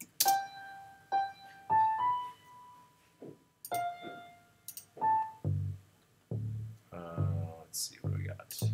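Reason's NN-XT sampler playing a short phrase of single sampled grand piano notes, one held for over a second. From about five and a half seconds in, deep plucked bass notes follow after the patch is switched to a Hofner pick bass sample.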